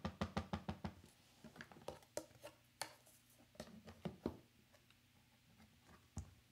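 A small dye ink pad dabbed quickly against a clear photopolymer stamp, about six or seven light taps a second, stopping about a second in. After that come a few scattered light knocks and clicks as the clear plastic plate of the stamping platform is handled.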